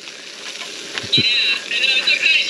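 Hamburgers frying on a camp stove, a steady sizzle. From about a second in, a high-pitched warbling sound joins it, with a soft knock.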